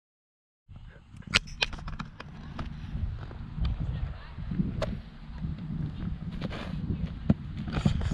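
After a brief silence, wind rumbling on the camera microphone, with a few sharp clicks and knocks scattered through it.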